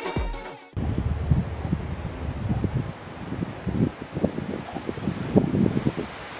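A music track cuts off suddenly under a second in, followed by wind rumbling on the microphone in irregular gusts.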